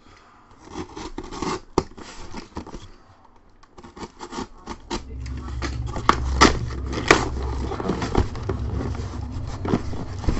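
Cardboard case being handled and opened: scraping and scratching on cardboard, with scattered clicks and several sharp knocks about six to seven seconds in. A low rumble joins about halfway, as the box is shifted.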